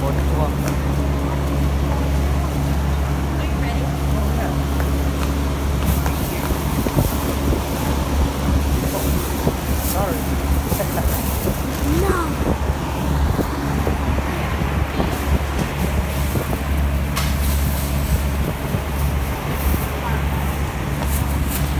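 Busy store checkout: voices talking in the background over a steady low hum, with intermittent rustling and clicks as plastic shopping bags are handled.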